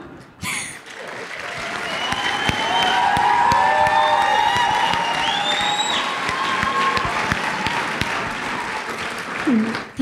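A church congregation applauding, with held high-pitched cries over the clapping. The applause swells about a second in and eases off near the end.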